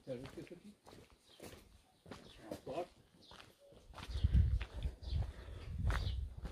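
Faint footsteps walking on a cobblestone street, with a low, uneven rumble on the microphone from about four seconds in.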